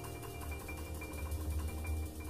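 Background music: sustained high notes over a low, pulsing bass.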